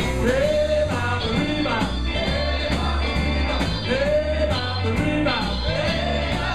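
Live band playing a jump-blues number, with electric guitar, a drum kit and a steady bass line under saxophone and trumpet phrases.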